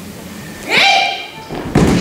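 A short shout rising in pitch, an aikido kiai, about three-quarters of a second in, followed almost a second later by a heavy thud as a body lands on the tatami mats in a breakfall from a throw.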